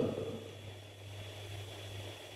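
Quiet room tone with a low, steady electrical hum.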